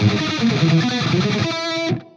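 Jackson electric guitar playing a thrash metal riff in A natural minor, a steady run of notes that cuts off sharply near the end.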